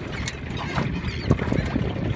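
Small-boat ambience on open water: wind rumbling on the microphone and water lapping at the hull, with a couple of short knocks, the loudest a little past the middle.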